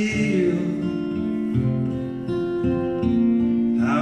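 Acoustic guitar playing an instrumental passage of a folk-pop song, chords ringing steadily between sung lines.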